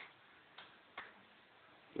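Faint clicking of the ASUS Eee PC's touchpad button, a few single sharp clicks about half a second apart, as items are picked in an on-screen list.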